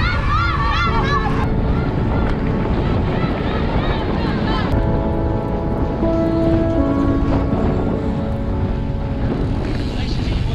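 Wind buffeting the microphone of a camera on a moving mountain bike, a loud, steady low rumble throughout. A voice shouts over it in the first second or so. From about five seconds in, music with held notes comes through from a loudspeaker.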